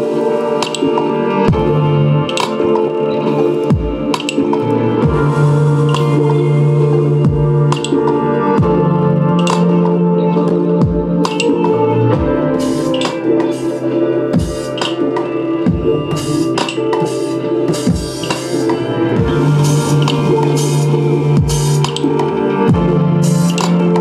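Electronic beat in progress playing back: sustained synth and keyboard chord layers with clicky percussion, a low bass note that comes and goes, and deep kick drums programmed in Reason's ReDrum drum machine, each thump falling in pitch and landing at uneven intervals.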